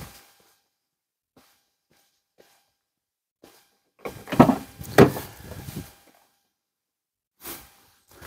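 Near silence with a few faint ticks, then a cluster of sharp clicks and knocks about four to six seconds in: a rear side door of a 1996 Buick Roadmaster estate wagon being unlatched and opened.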